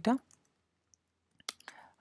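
A few computer keyboard keystrokes: one sharp click about one and a half seconds in, followed by a few lighter taps.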